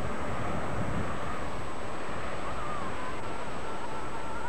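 Steady wind and sea surf with no speech, with faint wavering tones that rise and fall in pitch through the second half.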